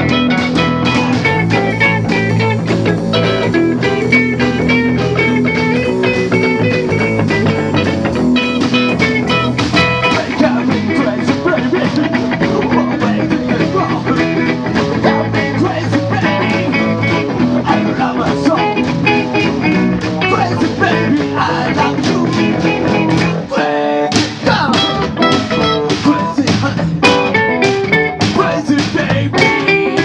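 Live rock and roll band playing an instrumental passage, electric guitars to the fore over bass and drums, with a brief break about three-quarters of the way through.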